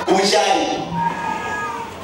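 A man's voice amplified through a public-address system, speaking with some drawn-out, high-pitched vowels.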